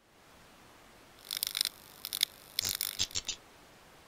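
Electronic clicking and crackling sound effects in three quick clusters, over a faint steady hiss.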